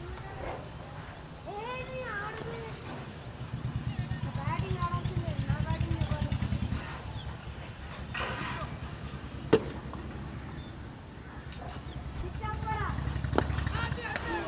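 Cricket players' voices calling across the field, with a low rumble swelling for a few seconds in the middle. A single sharp knock about halfway through is the loudest sound, and near the end comes a crack of bat on ball as the delivery is played.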